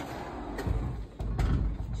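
Plywood sliding door moving along its overhead metal track: a low rumble with a knock about half a second in and another just past one second.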